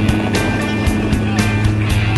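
Rock music with a regular beat, over a steady low hum from the jump plane's engine on its take-off roll.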